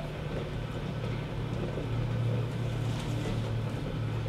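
A steady low hum under a faint even background noise, with no distinct knocks or clinks: room tone.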